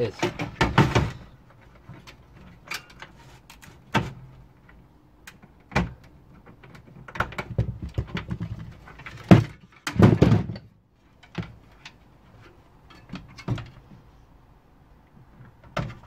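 Irregular metal clanks, clicks and knocks as a heavy PC power supply unit is worked loose and lifted out of a steel computer chassis, with the loudest clunks about nine to ten seconds in.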